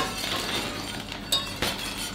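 Wire whisk clinking against a stainless steel saucepan as gravy is whisked: a few sharp metallic clinks, one at the start and several more in the second half.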